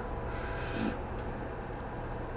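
Faint rustling as hands work an orchid's leaves and a wire support into sphagnum moss, over a steady low hum.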